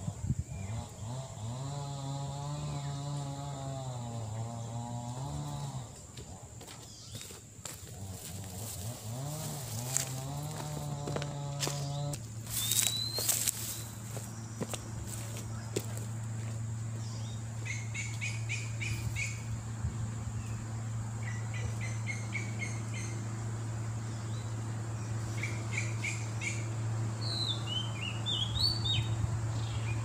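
Birds chirping in short bursts through the second half. Under them runs a steady low hum like a distant engine. Earlier, a droning hum rises and falls twice in pitch, and there is a brief burst of sharp knocks or rustles about halfway through.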